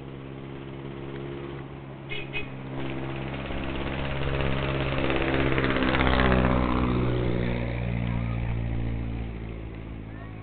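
A motor vehicle's engine running, growing louder to a peak about six seconds in and then fading, as if passing close by. Two brief high chirps come a little after two seconds.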